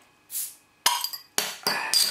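A glass beer bottle being opened with a bottle opener: a brief hiss, then a run of sharp metallic clicks and clinks with a short ringing tail as the crown cap comes off.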